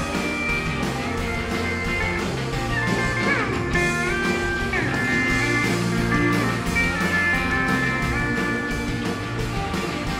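Live rock band playing an instrumental passage with the guitar to the fore, its notes bending in pitch a few seconds in. The recording mixes the soundboard feed with audience microphones.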